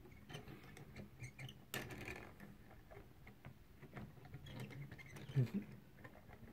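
Hand-cranked driftwood automaton working: faint, irregular small clicks and light rattling from its wire crank and shaft of eccentric cams as the figures move, with a slightly louder rattle about two seconds in.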